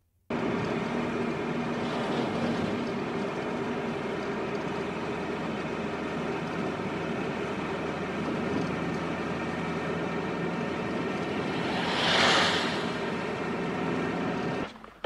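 Steady engine and road noise from inside a moving van, as heard on a film soundtrack, with a brief louder rush near the end.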